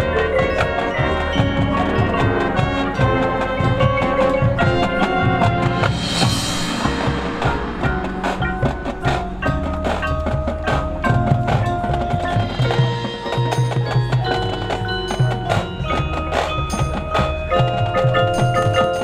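Marching band music led by the front ensemble's mallet percussion (marimbas and bells) over drum hits, with a crash that swells and fades about six seconds in; the second half turns to separate ringing mallet notes.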